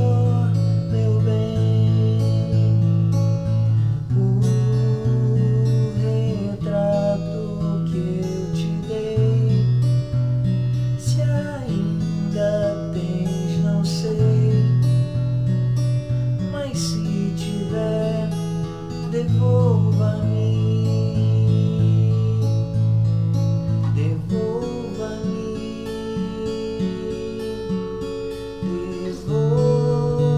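Acoustic guitar played fingerstyle: arpeggiated chords over a moving bass line, following a progression of B minor, E, A, F-sharp minor and D.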